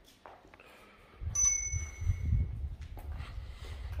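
A single bright metallic ring, like a small bell struck once, a little over a second in, dying away within about a second. A low rumble of wind on the microphone starts with it and carries on.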